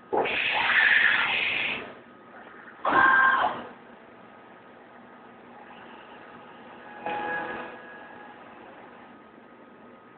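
Deckel Maho DMP 60S CNC machining centre at work: a low steady running sound broken by three bursts of louder machine noise. There is a loud one of nearly two seconds at the start, a shorter one about three seconds in, and a fainter one about seven seconds in.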